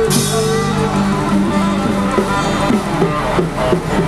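Live street band playing a Thai pop song instrumentally, with electric and acoustic guitars over drums, amplified through a small portable speaker.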